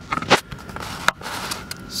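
Handling noise from a tablet being picked up and moved: a few short knocks and rubs, the loudest about a third of a second in.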